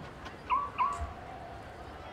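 A dog giving two short, high yelps about a third of a second apart, then a faint drawn-out whine.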